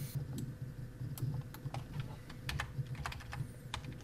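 Computer keyboard being tapped in short, irregular keystrokes, about two to three a second, over a low steady hum.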